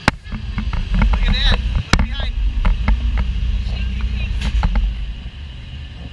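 Low rumble of an open Radiator Springs Racers ride vehicle moving along its track, heard from inside the car, with scattered clicks and knocks. The rumble eases about five seconds in.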